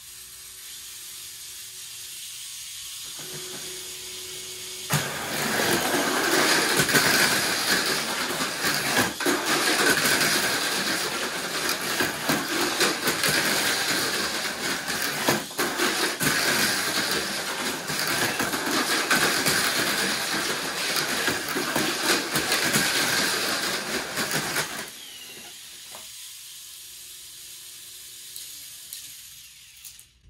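Two Tamiya Mini 4WD cars racing on a plastic track: small electric motors whirring at high speed, with wheels and rollers clattering along the track walls. The racket starts suddenly about five seconds in and drops away about five seconds before the end. Before and after it, a quieter steady hum with a thin tone is heard.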